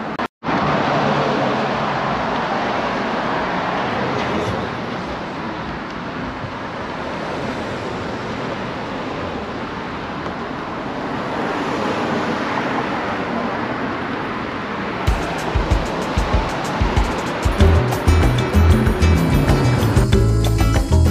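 A steady rushing noise of road traffic. About three-quarters of the way through, background music with a beat comes in and takes over.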